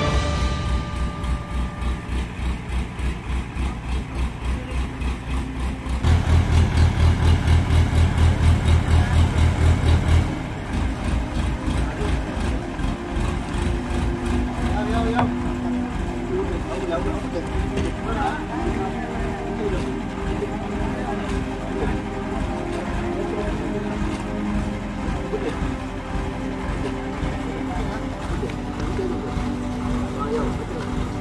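Background music with a steady beat for about the first ten seconds, then indistinct voices of several men over a steadily running engine.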